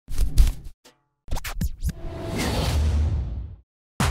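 Advertisement soundtrack: music with sharp percussive hits in two short bursts and a brief gap between them. About two seconds in comes a swelling whoosh of noise that fades out shortly before the end.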